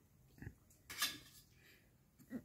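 Two short breathy sounds from a person close to the microphone, the second louder, about half a second and a second in.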